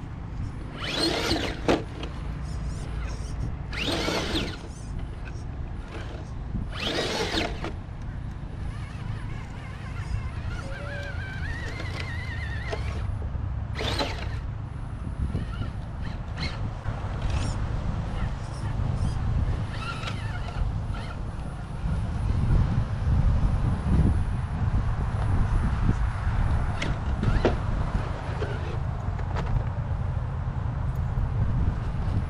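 Electric motor and gear drivetrain of a scale RC rock crawler whining as it climbs over rocks and sand, with a few brief louder rushes of noise in the first half.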